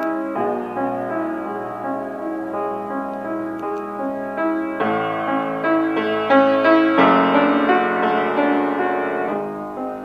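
A Kawai RX-2 5'10" baby grand piano played with both hands in a continuous warm-toned passage. It grows fuller and louder about five seconds in, peaking around seven, then eases off. The piano is a lot out of tune, not yet serviced after coming from a private home.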